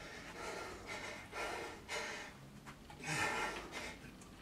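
A man breathing hard in several forceful, gasping breaths as he strains through a high-intensity set on a weight machine, the loudest breath a little after three seconds in.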